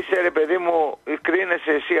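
A person talking over a telephone line, the voice thin and narrow-sounding, with a short break about a second in.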